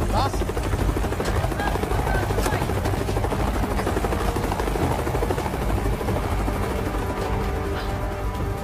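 Helicopter in flight: a rapid, regular rotor chop over a steady low engine rumble.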